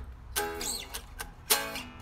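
Fender 60s Road Worn Stratocaster strummed in two triad chords about a second apart, each left to ring. The guitar has just been intonated, and the triads sound good up and down the neck.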